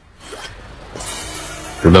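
A zipper being pulled open: a fainter short stroke, then a longer, louder one from about a second in.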